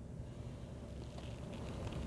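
Quiet background inside a vehicle cab: a faint steady low hum with no distinct events.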